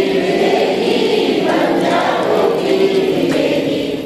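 A group of listeners singing a line of a Hindi devotional song together, repeating it after the leader. Many voices blend into one broad, slightly ragged unison.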